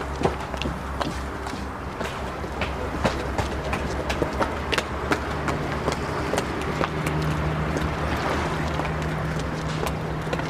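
Footsteps on stone paving, a run of irregular clicks over a steady low hum, with a low steady drone coming in about halfway through.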